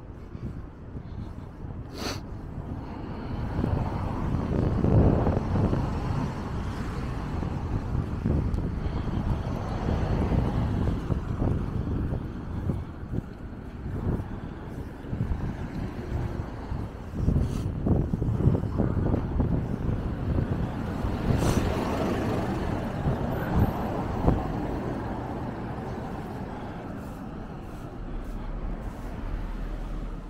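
City street traffic noise: cars passing, swelling louder about four to six seconds in and again around twenty-one to twenty-four seconds, with a few short clicks.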